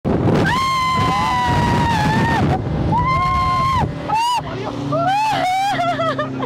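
Long, high-pitched excited whoops from a boat passenger, two held cries and then shorter rising-and-falling ones near the end, over the steady rushing noise of a 50 hp outboard motor, water spray and wind.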